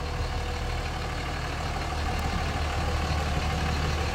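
The 5.9-litre Cummins inline-six diesel of a 2006 Dodge Ram 2500 idling steadily with a low, even hum.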